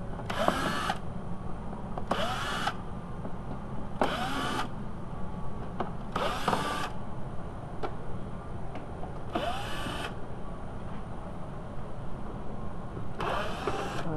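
Cordless drill/driver spinning in six short runs of about half a second each, its motor whining up at every start, as it backs out the plastic fender liner's screws.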